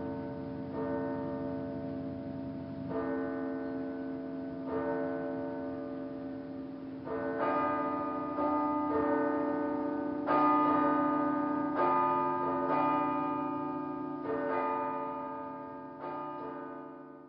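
Church bells ringing: about ten strikes, one every one to two seconds, each left ringing into the next, growing louder about halfway through.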